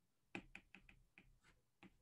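Faint, irregular taps and clicks of a stylus on a tablet screen while drawing, about eight in quick succession.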